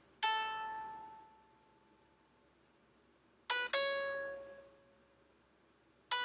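Clean electric guitar, played sparsely. A single note is plucked just after the start and rings out, fading over about two seconds. After a pause, two more notes are plucked in quick succession about three and a half seconds in and left to ring.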